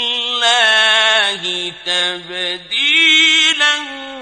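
A male reciter chanting the Quran in the melismatic mujawwad style, one voice holding long notes that slide and waver in pitch, with brief drops in the middle of the phrase.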